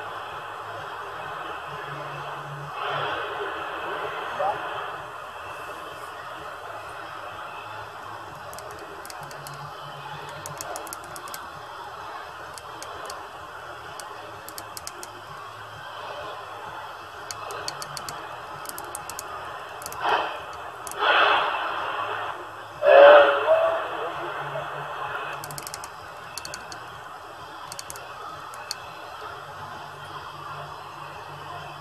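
CB transceiver's speaker on AM: steady static hiss with weak, distant stations fading in and out under it. Their voices come through louder about three seconds in and again twice around twenty seconds in. This is skip propagation bringing in far-off stations that are barely readable.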